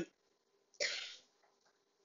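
A single short cough about a second in, sudden at the start and fading within half a second.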